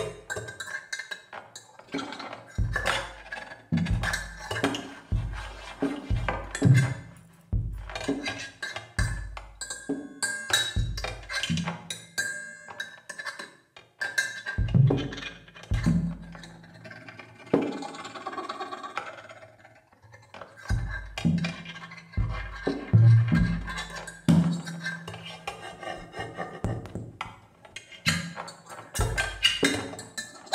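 Free-improvised percussion duet with no steady beat: scattered drum strokes from a floor tom and snare, struck with mallets, many leaving a deep booming decay, mixed with the scraped and rubbed sounds of an amplified, contact-miked cymbal. About two-thirds of the way through the strokes thin out into a stretch of scraping.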